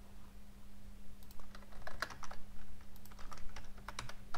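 Typing on a computer keyboard: irregular keystroke clicks that start about a second in.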